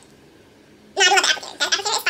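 Quiet room tone for the first second, then a high-pitched voice in short wordless bursts, like laughter.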